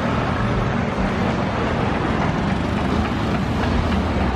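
Road traffic: a steady wash of vehicle engine rumble and road noise from vehicles passing close by.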